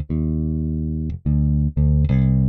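Modo Bass 2's modelled '60s Precision Bass playing low electric bass notes: one long held note, then two shorter ones. The plucking point is being moved away from the bridge toward the neck as it plays.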